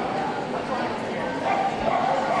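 Hall ambience: a crowd's steady chatter with dogs barking and yipping among it.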